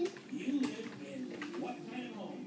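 A child making wordless, low wavering hooting sounds with the voice, with a couple of light knocks.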